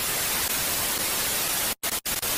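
Television static sound effect: a steady hiss of white noise, broken by a brief gap near the end.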